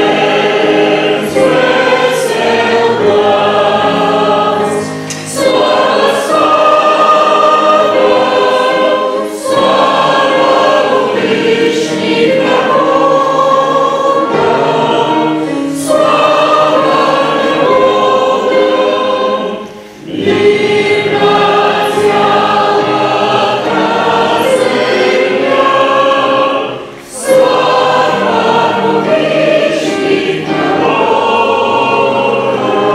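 A church congregation singing a hymn together, led by a woman at a microphone, with keyboard accompaniment. The lines are long held notes with short breaks between phrases.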